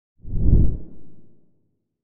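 A low whoosh sound effect accompanying a logo intro. It swells in just after the start, is loudest around half a second in, and fades away by about a second and a half.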